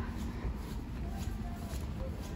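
Shop background noise: a low steady rumble with faint distant voices, and light shuffling of footsteps and a handheld camera being carried along the aisle.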